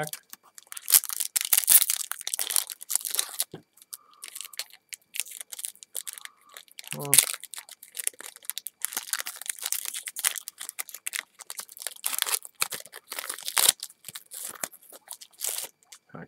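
Wrapper of a football trading-card pack being torn and crinkled open in a long run of short rips and crackles, with a short pause partway through. The pack is hard to open.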